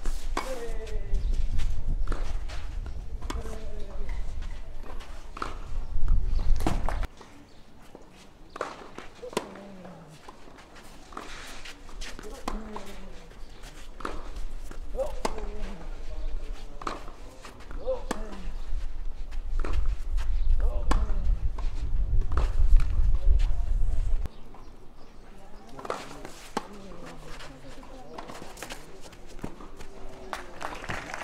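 Tennis balls struck by rackets and bouncing on a clay court during rallies, heard as sharp pops spaced about a second apart. Distant voices come and go in the background. A low rumble runs through the first several seconds and again about twenty seconds in.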